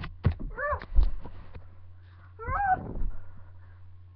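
Two meows, each a short call that rises and falls in pitch, with a few sharp knocks and bumps of movement between them, the loudest about a second in.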